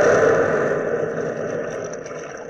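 Radio sound effect of sea surf: a steady rushing wash of waves that slowly fades down.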